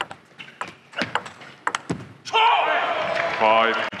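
Table tennis rally: a quick run of sharp clicks as the celluloid ball is struck by the bats and bounces on the table. A little over two seconds in, the rally ends and loud voices take over.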